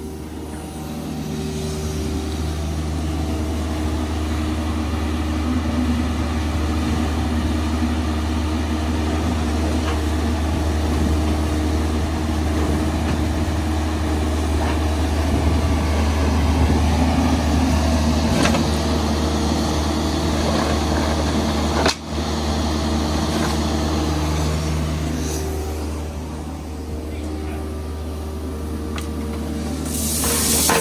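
Mini excavator's diesel engine running under work, a loud steady drone whose pitch shifts as the arm is worked; it drops out sharply for an instant a little over two-thirds through.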